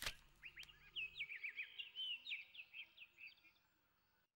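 Faint birdsong: a run of quick chirps and short whistles that dies away shortly before the end.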